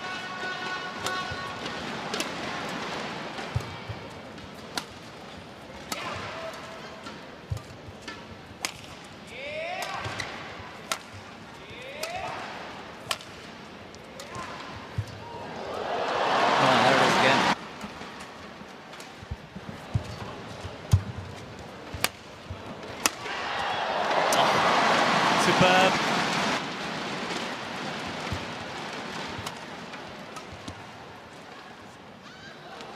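Badminton rally: sharp racket-on-shuttlecock hits every second or so, with shoe squeaks on the court. The crowd swells up twice, about halfway through and again a few seconds before the end.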